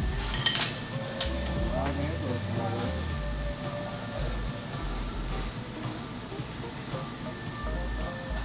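Cutlery clinking against a plate, a few quick clinks about half a second in, over steady restaurant background music and faint chatter.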